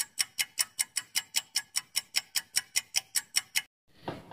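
Countdown timer sound effect: a clock ticking fast and evenly, about five ticks a second, stopping abruptly near the end as the answer time runs out.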